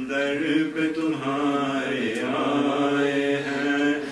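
Male voices chanting a slow noha, a Shia mourning lament for Muharram, in long-held melodic notes.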